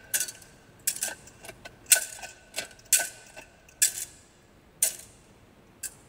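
Metal thurible swung on its chains, clinking sharply about once a second with a short metallic ring after each clink, as the Gospel book is incensed.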